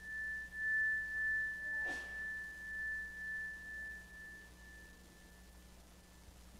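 A small meditation bell rings out after a single strike, one clear high tone with a slow pulsing waver, fading away over about five seconds. It closes a guided meditation. There is a faint brief noise about two seconds in.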